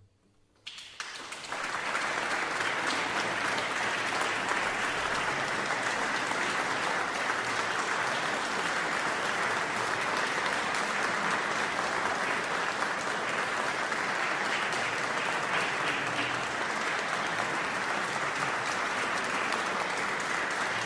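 Audience applause that starts about a second in, swells within a second and then holds steady.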